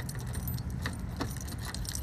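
Wind buffeting a handheld phone's microphone, a steady low rumble, with a few scattered clicks.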